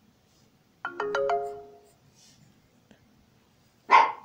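An electronic chime: four quick rising notes about a second in that ring on and fade. Near the end comes a brief, loud, sudden sound.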